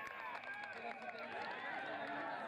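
Many voices shouting and calling over one another at a rugby match, with no single speaker standing out.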